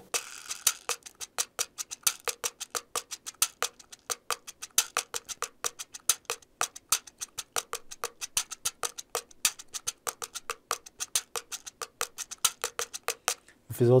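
A pocket cajón, a small handheld wooden cajón, played with the fingers in a samba groove with a variation: a fast, steady run of crisp wooden taps with louder accents. It is played with its sound hole facing backwards, which changes its timbre.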